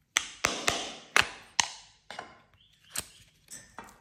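A small plastic clay tub being tapped and clicked open by hand: five sharp taps in the first two seconds, each trailing off briefly, then softer scattered clicks as the clay is taken out.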